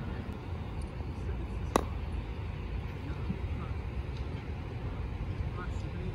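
A single sharp click of a putter striking a golf ball, a little under two seconds in, over a steady low outdoor rumble.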